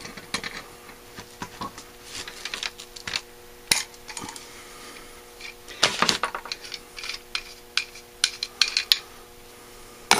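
Metal clicks and clinks of an adjustable wrench working the fuel inlet fitting of a Holley 1904 one-barrel carburetor, then the wrench being set down and the carburetor handled on the bench. The sharpest clinks come about four and six seconds in, with a quick run of small clicks near the end, over a faint steady hum.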